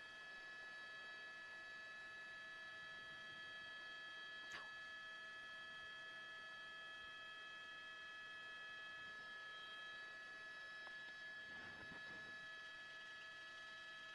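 Near silence: only a faint, steady electrical hum of several held tones on the broadcast feed, with one faint click about four and a half seconds in.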